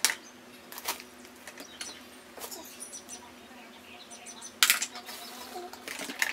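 Small craft items clicking and clattering as a child's hands rummage through a bowl of supplies: a few separate sharp clacks among lighter ticks, the loudest a little past the middle.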